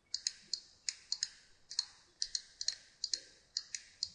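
Computer mouse buttons clicking: about a dozen and a half short, sharp clicks at an irregular pace, some in quick pairs.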